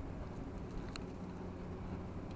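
Wind on the microphone with footsteps crunching on loose gravel, and a sharp click about a second in.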